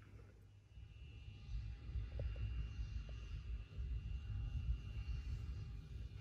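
Faint low rumble of launch-pad ambience from a rocket livestream played off a screen, with a thin steady high tone and a few small ticks about two to three seconds in.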